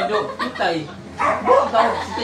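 People talking in overlapping conversational voices, loudest about one and a half seconds in.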